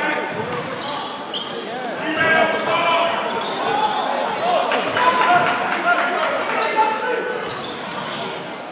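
A basketball being dribbled on a gymnasium's hardwood floor during play, with voices of players and spectators throughout.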